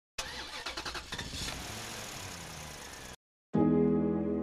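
A car engine being started: the starter cranks rapidly for about a second, the engine catches and runs for about a second and a half, then the sound cuts off suddenly. Soft keyboard music begins just before the end.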